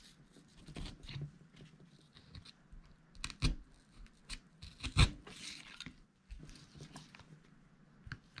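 Handling noises as hands stretch and press a bass skin over a foam fish body on newspaper: scattered rustling and scraping, with sharp taps about three and a half and five seconds in, the second the loudest.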